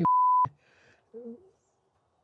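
A censor bleep: a single steady high-pitched tone, about half a second long, that starts and stops abruptly where speech has been cut out.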